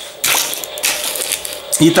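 Rustling and scraping of a card-and-plastic coin blister pack being picked up and handled on a wooden table. The sound comes in several uneven bursts.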